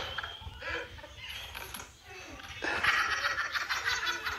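People laughing, quietening to a lull about two seconds in, then picking up again louder.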